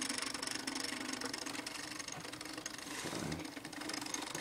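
Small stepper motor turning a sonar sensor back and forth through Lego gears, a steady hum.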